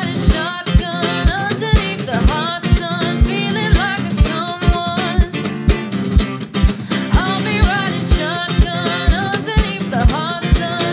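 Acoustic guitar strummed briskly in a steady upbeat rhythm, with a deep thump on every beat, about twice a second, and a voice singing over it.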